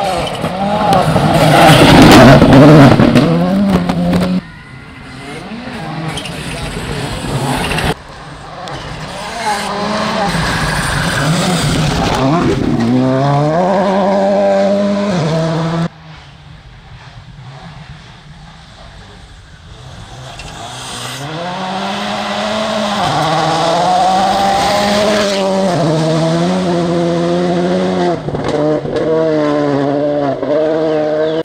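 A Volkswagen Polo rally car passes close at full throttle in the first few seconds, its tyres loud on the muddy dirt road. Then, across several cuts, rally car engines rev up and drop in pitch at each gear change.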